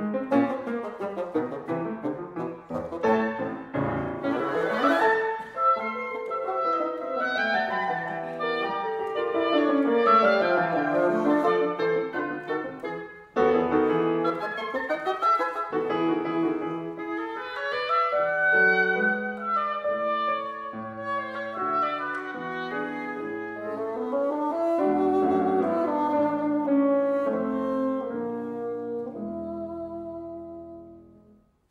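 Oboe, bassoon and grand piano playing fast classical chamber music together, with a brief break about thirteen seconds in before all three come straight back in.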